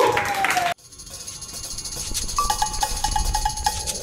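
A live band with a singer's gliding vocal cuts off abruptly less than a second in. After it, hand percussion plays softly: a steady run of light hits with a high ringing above them. From about halfway, a short pitched note is struck again and again in quick rhythm.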